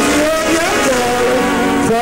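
Live calypso music from the stage: the band and singer sustain long, steady notes.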